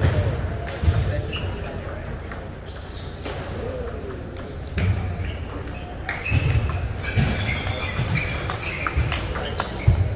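Table tennis ball clicking off paddles and table in a rally, with short shoe squeaks on the sports floor, against the steady chatter and ball noise of a busy tournament hall. The clicks come thicker from about halfway in.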